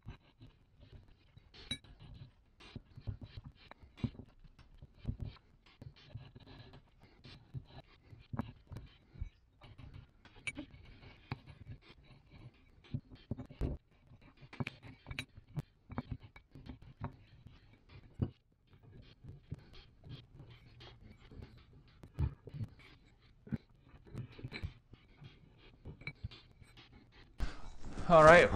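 400-grit sandpaper on the end of a flat steel tool, turned by hand on the reed-valve seats of an aluminium compressor head, lapping them flat so the valves seal: a faint, irregular scratching with scattered light clicks and knocks.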